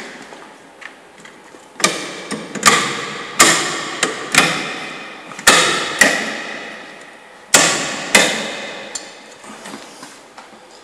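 Metal parts of a tow-ball bike carrier knocked while it is fitted: about nine sharp clanks at uneven intervals, each ringing out and fading over about a second.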